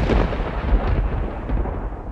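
Thunder sound effect: a loud rolling rumble whose crackly hiss thins out while the deep rumble keeps going.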